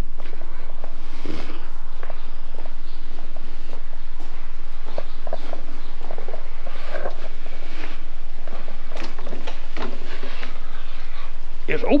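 Footsteps on a concrete walkway, irregular and soft, under a steady low hum.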